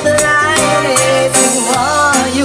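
Live reggae band playing through the stage PA: bass, drum kit and keyboards with steady shaker-like percussion. A voice holds a wavering note near the end.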